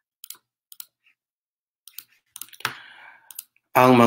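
Several short, sharp clicks of a computer mouse, spread over the first two seconds, then a brief hiss. A recorded voice begins at the very end.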